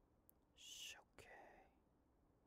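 A faint whispered voice close to the microphone: two short breathy sounds, a hiss about half a second in and a softer one just after a second.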